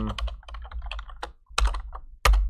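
Typing on a computer keyboard: a quick run of keystrokes, then a louder, heavier key strike about one and a half seconds in.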